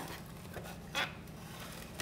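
Quiet room tone with one brief, soft sound about a second in.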